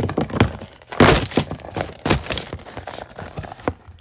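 A rapid, irregular run of knocks, thuds and crackles, loudest about a second in and again about two seconds in, dying away near the end.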